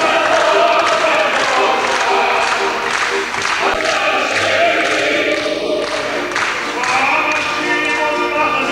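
Mixed choir of men's and women's voices singing a Polish folk song in harmony, without a break.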